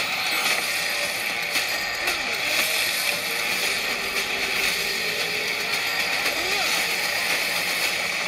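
Film-trailer action soundtrack heard through cinema speakers: a dense, steady wash of effects noise with faint voices under it.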